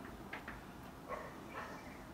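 Whiteboard marker squeaking faintly against the board in a few short strokes as curves are drawn.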